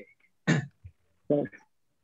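A person clearing their throat, then a short voiced sound about a second later, over a video-call connection.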